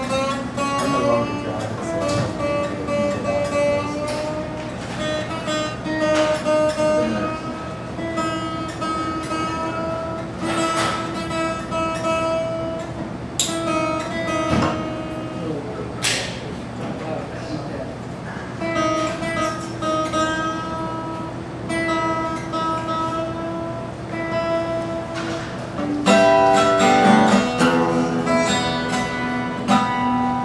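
Solo acoustic guitar played as an instrumental passage, with picked notes and strummed chords ringing out; a louder, denser run of strummed chords comes near the end.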